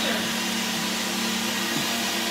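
Steady whir of a small motor or fan, with a low hum running under it.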